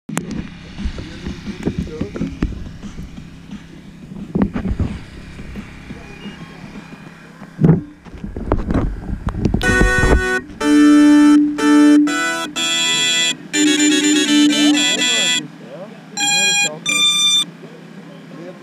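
Handling noise and knocks as the GoPro-carrying FPV quadcopter is moved and set down. Then a run of electronic beep tones in several pitches, ending with two short beeps: the quad's startup tones on power-up, which its ESCs play through the motors.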